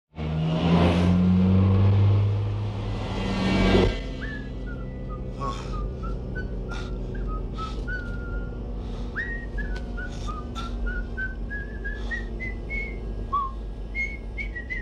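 A whistled tune of short, wandering notes from the robot taxi driver, over the steady low hum of the cab. Before the whistling starts, about four seconds in, there is a louder low rumbling hum.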